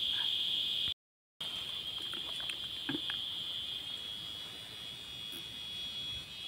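Insects chirring in a steady, high, even drone, broken once by half a second of total silence about a second in.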